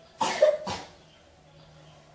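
A man coughing twice in quick succession, two short sharp coughs about half a second apart.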